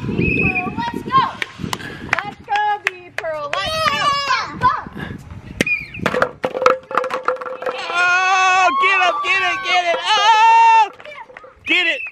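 Young children shouting and squealing at play, with a long stretch of high excited calls near the end. Scattered sharp knocks come from the hollow plastic bowling pins and ball on the concrete sidewalk.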